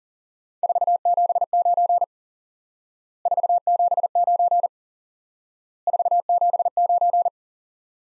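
Morse code sent three times at 40 words per minute on a single steady tone, spelling the signal report 479: three identical bursts of dits and dahs, each about a second and a half long, with about a second of silence between them.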